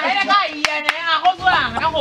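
Raised, excited voices shouting, with two sharp hand claps less than a second in, about a quarter second apart.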